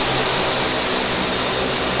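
Turboprop engine being started, heard inside the cockpit: a steady turbine rush with a faint steady high whine as the engine is turned by starter air with fuel flowing, just before light-off.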